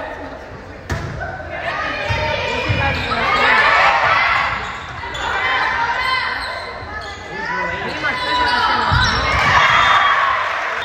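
Volleyball rally in a gymnasium: a sharp hit of the ball about a second in as the serve is struck, then players and spectators shouting, swelling around the middle and again near the end. The sound echoes in the large hall.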